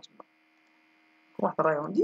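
Faint steady electrical hum from the recording chain during a pause in speech; talking resumes about one and a half seconds in.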